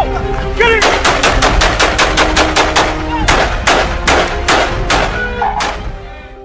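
Pistol fire from shooters on a range: a rapid, irregular string of about twenty shots, some four a second, starting about a second in and stopping just before the end, over background music.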